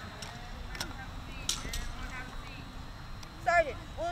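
Sharp slaps and knocks of hands striking drill rifles during a rifle drill movement, several separate strikes in the first two seconds. A short shout near the end.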